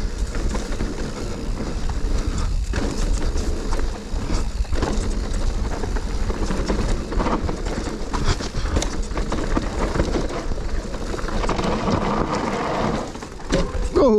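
Mountain bike ridden at speed down a dirt and rock trail: steady rumbling tyre and wind noise on the bike-mounted camera, with frequent sharp knocks and rattles from the bike over bumps and roots.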